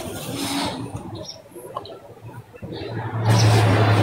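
A sharp click, then faint scattered noise, then a steady low hum with a rushing noise that comes in about three seconds in and grows louder.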